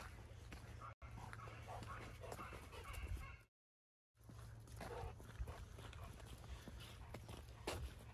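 A dog making a few faint, short pitched cries over a low, steady wind rumble on the microphone. The sound drops out completely for about half a second midway.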